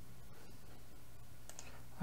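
Two faint computer mouse clicks close together about one and a half seconds in, over a steady low background hum.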